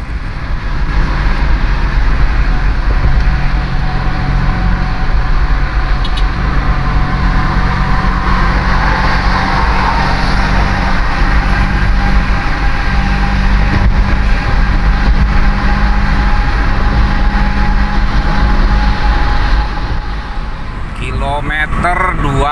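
Steady road and engine noise heard from inside a car's cabin while cruising at highway speed, a continuous low drone. It drops off somewhat near the end.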